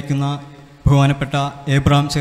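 A man reciting a Malayalam text aloud into a microphone in a steady, chant-like voice, holding an even pitch through each phrase with a short pause in between.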